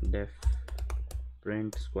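Computer keyboard typing a line of code, a quick run of keystrokes, with a man's voice speaking over it.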